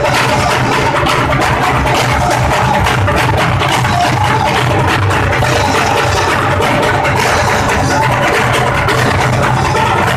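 Frame drums (daf) beaten in a loud, steady rhythm, with a group chanting in a Sufi Rifai zikr.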